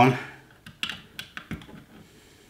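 A run of about six small, sharp clicks and taps as a USB cable plug is worked into the USB output port of a Celestron ThermoCharge 10 hand warmer, a snug fit.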